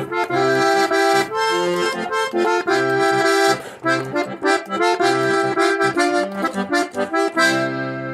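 Diatonic button accordion (verdulera) playing the closing phrases of a chacarera, with chords in short rhythmic phrases. It finishes on one long held chord near the end.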